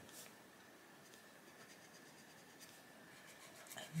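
Arteza Expert coloured pencil shading on paper: a faint, soft scratching of the pencil lead over the page.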